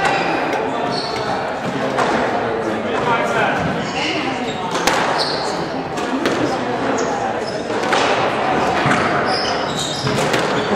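Squash ball smacking off racket strings and court walls, sharp echoing hits about a second apart, over people talking in the background.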